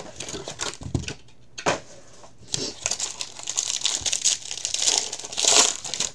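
Plastic-and-foil trading card pack wrapper crinkling and tearing as it is handled and opened. A few light clicks come first, then steady crinkling from about halfway, loudest just before the end.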